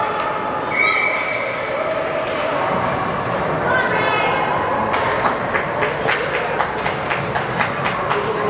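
Spectator chatter in an ice rink; a referee's whistle blows briefly about a second in, stopping play. From about five seconds in, a run of sharp knocks comes, about four a second.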